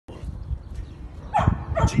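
A dog barking: two short barks in the second half, over a low rumble.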